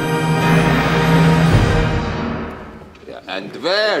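Full orchestra, strings and brass, playing a loud sustained passage over a low held note that swells about a second and a half in, then dies away about three seconds in. A man's voice starts speaking near the end.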